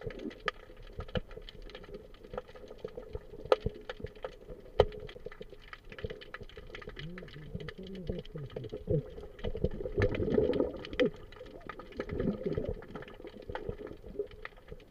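Muffled underwater sound through a submerged camera: scattered sharp clicks and knocks over a faint steady hum. There are muffled voice-like sounds about halfway through and again about three-quarters of the way in.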